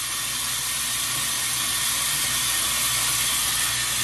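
A water tap running steadily into a sink, an even hiss.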